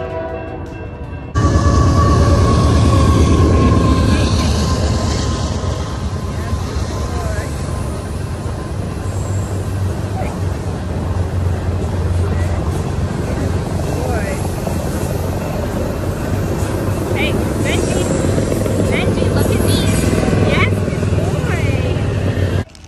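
Loud, steady low rumble and noise of a nearby passing train, starting abruptly about a second in.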